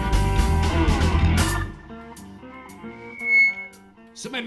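Live blues band with drums, bass and Hammond organ playing loudly, then cutting off about a second and a half in, leaving a box-bodied electric guitar playing a few single notes alone, with one bright ringing note near the end.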